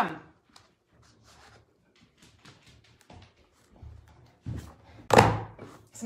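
Desktop hole punch pressed down through a stack of paper: faint clicks and paper handling, then a softer knock and a loud thunk about five seconds in.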